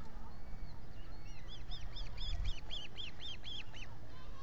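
Osprey calling: a quick series of about nine high, whistled chirps, three or four a second, starting about a second in and stopping just before the end, over a steady low rumble.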